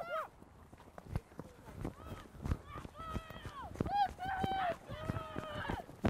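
Young rugby players calling and shouting to each other across the pitch during open play, including one longer held call about halfway through, with scattered low thuds of running feet on grass.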